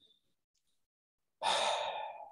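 Silence, then about one and a half seconds in, a man's audible breath lasting about a second, just before he speaks again.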